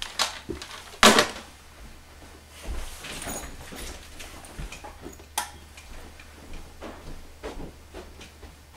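A series of knocks and clicks, like objects being handled. The loudest is a sharp knock about a second in, and fainter knocks and a short rustling stretch follow.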